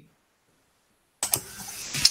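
Dead silence for about a second, then a sudden click as a microphone opens, followed by a steady hiss of background noise.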